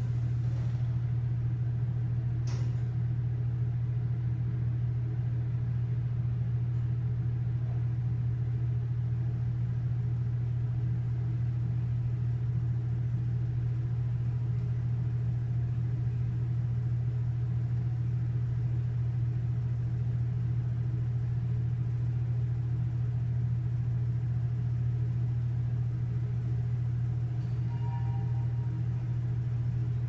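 Elevator car descending at speed: a steady low hum and rumble inside the cab. A single click comes a couple of seconds in, and a short two-note chime sounds near the end as the car nears the lobby.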